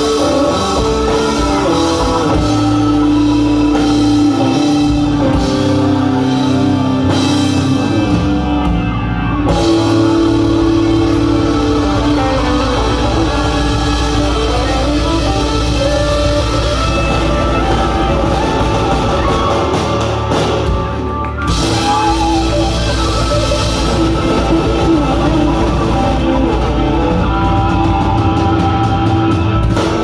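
Live rock band playing: electric guitars, drum kit, bass, keyboards and congas, with long sustained notes over a steady beat.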